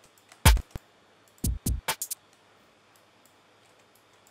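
Electronic kick drum samples played back in a DAW while a house beat is being programmed: one deep kick with a quick downward pitch drop, then a quick run of shorter kick-like hits about a second and a half in, followed by quiet for the rest.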